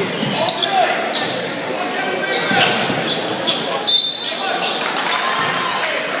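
Basketball game in an echoing gym: a ball bouncing on the hardwood court and sneakers squeaking in short squeals, over steady crowd chatter.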